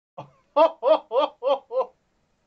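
A woman laughing: a short intake, then five quick "ha" bursts, about three a second, each falling in pitch.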